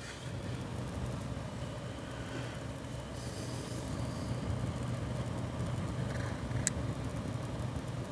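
Noctua NH-D9L CPU cooler's 92 mm fan running at 50% speed, a steady, quiet whir and hum that is barely audible, with a small click about two-thirds of the way through.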